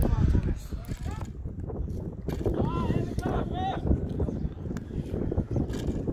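Distant voices calling out in a few short shouts about two and a half to four seconds in, over a steady low outdoor rumble.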